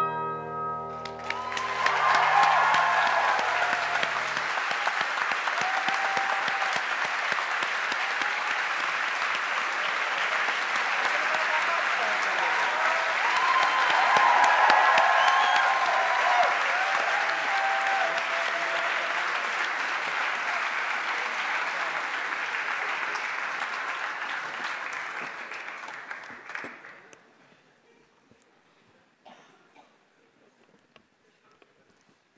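The final chord on an electric stage piano rings and dies away as an audience bursts into applause with scattered cheers and whoops. The clapping holds for over twenty seconds, then fades out a few seconds before the end.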